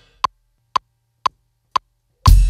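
Metronome click sounding four even beats, two a second (120 beats per minute): a one-bar count-in.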